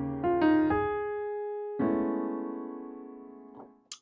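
Piano playing jazz-gospel chords: a few quick chord strikes, then a held chord. Another chord is struck just under two seconds in and rings until it dies away.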